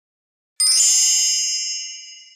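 A single bright, high-pitched chime, struck once about half a second in, that rings on and fades away.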